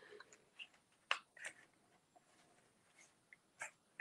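Quiet, with a few faint, brief clicks and rustles of cardstock being handled and pressed, the strongest about a second in.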